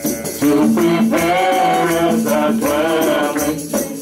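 Live gospel worship music: sustained keyboard chords with singing voices and hand percussion shaking out the beat.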